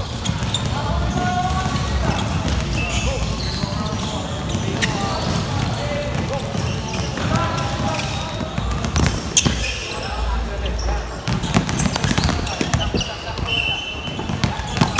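Basketballs bouncing on a wooden gym floor, scattered sharp thuds at irregular moments, under the continuous chatter and calls of many players.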